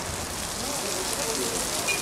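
Heavy rain pouring onto a street, a steady hiss of falling water.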